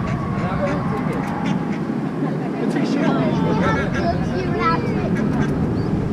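A duck quacking, with people's voices and laughter mixed in.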